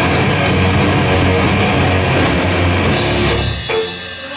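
Grindcore band playing live at full volume: electric guitar, bass and drum kit with crashing cymbals. The song ends abruptly about three seconds in, with the low notes ringing on for a moment before cutting off.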